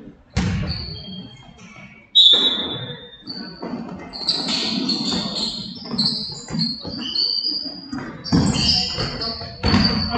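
Basketball game in a large gym: sneakers squeaking on the hardwood floor, loudest about two seconds in and frequent from four seconds on, with a basketball bouncing and voices echoing in the hall.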